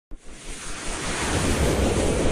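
Whooshing noise swell from an animated logo intro's sound effect, a wind-like hiss that starts suddenly and builds in loudness over the first second and a half.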